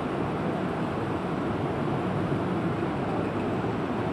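Steady rushing background noise with no voice, holding an even level throughout.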